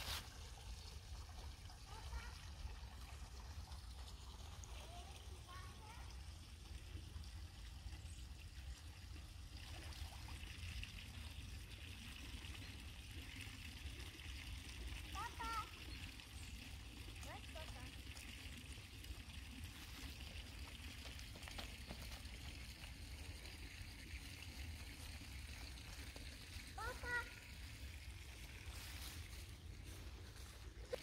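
Faint trickling water from a small pipe fountain and stream, over a steady low rumble. Two brief high-pitched rising calls stand out, one about halfway and one near the end.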